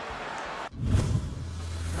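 Broadcast stadium crowd noise cuts off a little under a second in, replaced by a whoosh and a low boom. A steady low hum follows: the transition sound effect of an inning title graphic.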